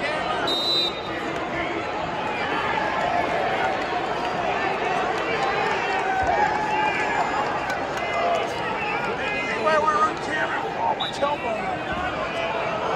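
Arena crowd of many voices, with overlapping chatter and shouts and no single clear speaker. A brief high tone sounds about half a second in and again near the end.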